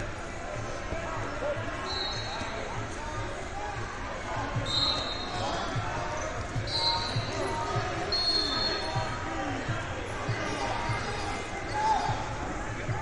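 Large gym hall of a wrestling tournament: repeated dull thuds of bodies and feet on wrestling mats, under indistinct shouting voices echoing around the hall. A few short high-pitched tones cut through about two, five, seven and eight seconds in.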